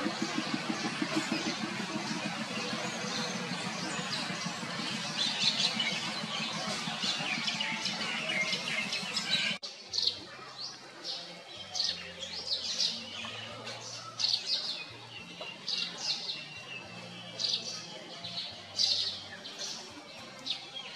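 Birds chirping: many short, high calls. For the first half they sit in a dense, steady background noise that cuts off suddenly about halfway through; after that the chirps stand out clearly against a quieter background.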